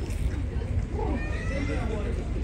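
Bystanders' voices. A high-pitched voice with a gliding, rising and falling pitch comes in about a second in, over a steady low rumble.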